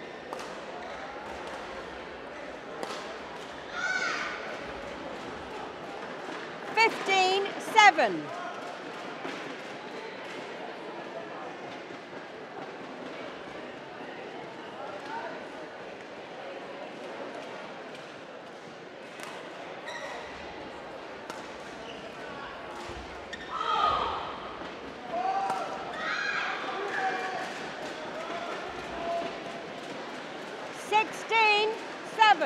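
Badminton play in a sports hall: sharp clicks of the shuttlecock struck by racquets and players' shoes squeaking on the court floor, the loudest squeaks a few seconds in. Short vocal calls ring out a few times in the second half.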